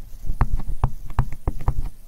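A pen stylus tapping on a tablet's writing surface while numbers are written by hand: a quick, uneven run of about ten sharp clicks.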